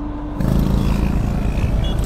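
A motor vehicle's engine rumbling low and steady, setting in about half a second in.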